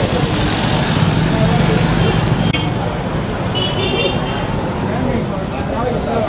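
Busy market-street ambience: a crowd chattering over passing motorbike and traffic noise, with a few short high-pitched beeps from a horn or bell, clearest about four seconds in.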